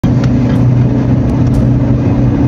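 Car engine running steadily while driving, a constant low hum.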